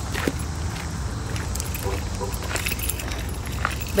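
Light clicking and jingling handling noise over a steady low rumble on a phone microphone carried while walking, with scattered sharp ticks.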